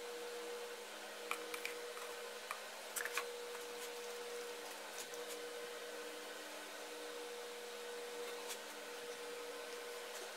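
Faint, scattered light clicks and taps of plastic mixing cups and a wooden stir stick as epoxy resin is poured into a mold, over a steady hum.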